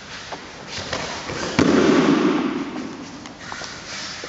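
Sharp slap and heavy thud of a body hitting the dojo mats about one and a half seconds in: an aikido breakfall (ukemi) as the partner is thrown during a kata. The low rumble of the mat fades over about a second.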